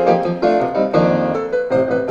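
Live music led by a piano: a succession of struck notes and chords over held lower notes.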